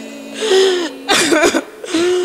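People wailing and sobbing aloud in fervent prayer, their voices breaking and wavering in pitch in two loud outbursts, over a steady held musical note.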